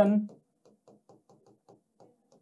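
Marker pen writing on a whiteboard: a quick run of faint short taps and strokes, several a second.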